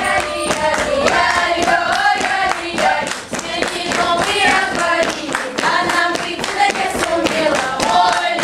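A young folk choir of girls and teenagers singing a lively Russian dance song in full voice, with rhythmic clapping keeping the beat.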